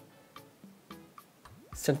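Quiet background music with a light ticking beat under a pause in the narration; the voice comes back near the end.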